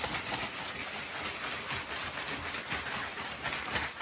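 Ice and rock salt shifting and crunching inside a plastic zip-top bag as it is shaken and squished on a countertop. It makes a steady, gritty rattle and rustle of ice against plastic.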